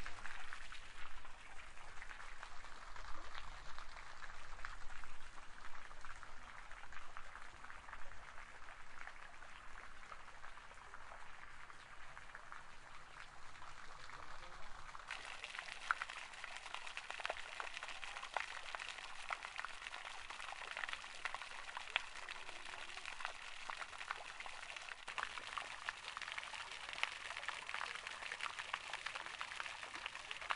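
Garden fountain, thin jets of water falling and splashing into a pond: a steady patter of drops, growing brighter and nearer about halfway through.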